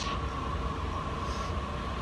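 Steady roar of a glass studio's gas-fired furnace and blowers, with a low rumble and a constant hum.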